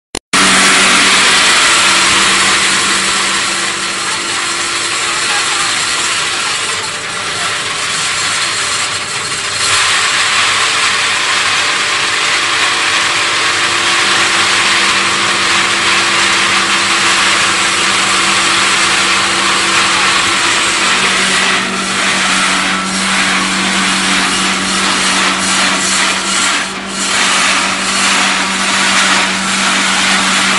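Hammer mill running and grinding maize kernels: a loud, steady grinding rush over a constant motor hum.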